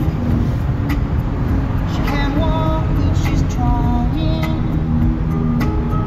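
Steady road and engine rumble inside a moving car's cabin, with music playing over it: a melody and a regular beat.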